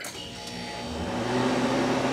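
Harvest Right home freeze dryer starting up after START is pressed: a machine hum that grows steadily louder, with a low tone rising in pitch about a second in as a motor spins up.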